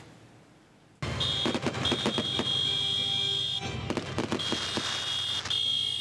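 Near silence for about a second, then a heavy KamAZ dump truck running as it drives along, a low rumble under engine and road noise, with a high steady tone that starts and stops several times over it.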